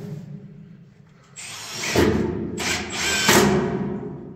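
Cordless drill fastening a wooden decking board to the timbers, in three runs: a longer one about a second and a half in, then two short ones near the end.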